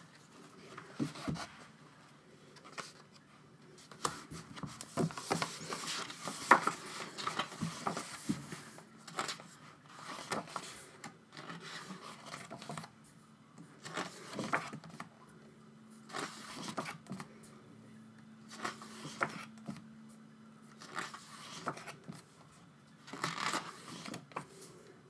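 Pages of a glossy album photobook being turned and handled: quick paper flicks and rustles in irregular bursts, with short pauses between page turns.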